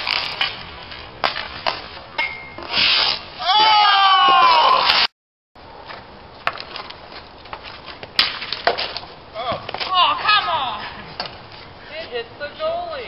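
Street hockey on concrete: sticks clacking and scraping on the pavement in sharp, irregular knocks, with short shouts from the players. The sound cuts out briefly about five seconds in, then the clacking and shouts go on.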